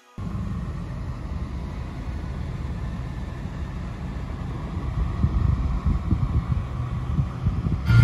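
A 2013 GMC Sierra pickup's engine running as the truck is driven, heard from inside the cab as a low rumble that gets louder after about five seconds.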